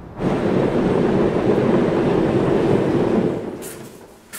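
Loud, steady rushing rumble of a passing train, starting suddenly and fading out near the end.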